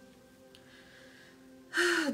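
Faint background music with steady held tones, then near the end a sharp, loud intake of breath as a woman starts to speak.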